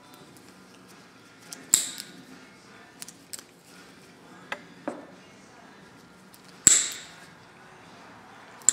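Side cutters snipping the nubs off a rubber coil-spring isolator flush: two sharp snaps about five seconds apart, with a few lighter clicks between.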